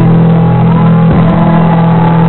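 Live punk-ska band playing loud, with held low guitar and bass notes that break off briefly about halfway through.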